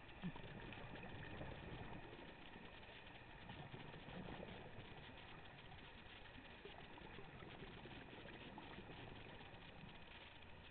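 Faint, steady, muffled underwater noise as heard by a camera in a waterproof housing while diving over a reef, with a single sharp knock about a third of a second in.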